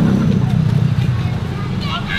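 Low rumble of a motor vehicle engine running close by in street traffic, easing off near the end.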